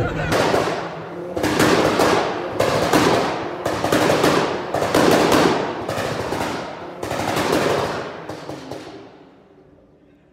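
A tuned car's exhaust, revved hard again and again in a loudness test, in about eight bursts roughly a second apart, each full of rapid crackling pops and bangs, dying away near the end. The run is measured at about 131.7 dB.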